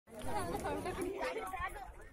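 Several people talking at once: overlapping chatter with no single clear voice, a little quieter toward the end.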